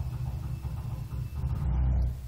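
A low rumble that grows louder toward the end and then dies away.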